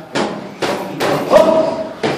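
Gloved punches landing on Thai pads: about four sharp smacks in quick succession, the last one the loudest.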